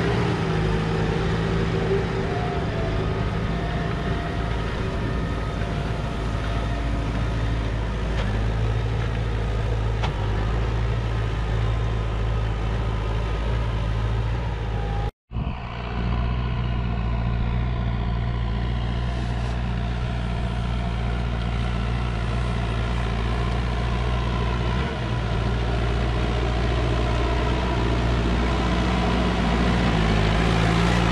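McCormick MC 130 tractor's diesel engine running steadily under load as it pulls a 32-disc harrow through the soil. The sound cuts out for an instant about halfway through.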